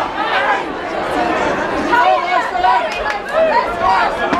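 Ringside crowd at an amateur boxing bout, many voices shouting and calling out over one another in a loud, unbroken din.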